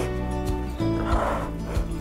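Soft background music of sustained, held notes, with a brief breathy sound about a second in.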